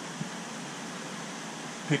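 Steady hiss of a large aquarium's water circulation and aeration, with one faint click about a quarter second in.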